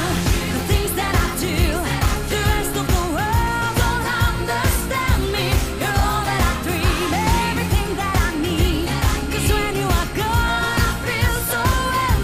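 Pop song playing: a female voice sings a gliding melody over a steady drum beat and bass.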